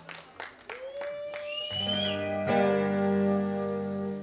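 Electric guitars and bass sounding between songs on a live stage. A guitar note slides slightly upward, then about two seconds in a loud low sustained note swells in and holds until it stops near the end.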